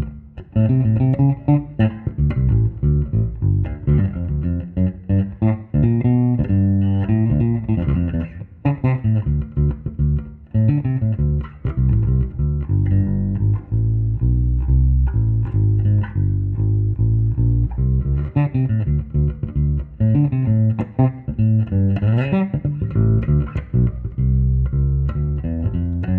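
Electric bass played solo, a continuous line of plucked notes with a sliding note near the end, on Leo Fender's breadboard pickup-tester bass: a maple board fitted with single-coil pickups and a Music Man neck.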